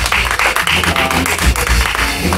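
A small group of people clapping in applause, over live rock band music with steady bass carrying in from a nearby stage.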